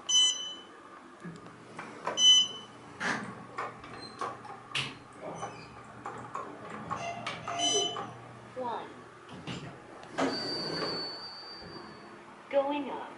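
Otis Series 5 elevator car: a short high electronic chime sounds three times, with sharp clicks of the car's floor buttons being pressed in between. Near the end comes about two seconds of rushing noise with a steady high whine, like the sliding car doors moving.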